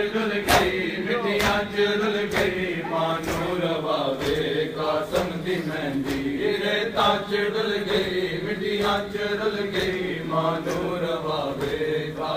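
Group of men chanting a Punjabi noha (Muharram lament) together, with sharp chest-beating slaps (matam) landing in a steady rhythm about once a second.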